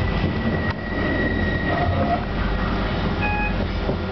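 Class 323 electric multiple unit heard from inside a carriage while running: steady wheel-on-rail rumble with a low hum. A thin high tone sounds over the first couple of seconds, and a brief high-pitched tone a little after three seconds.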